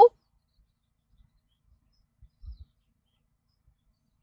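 Near silence inside a parked car, broken by a couple of faint low thumps about two and a half seconds in.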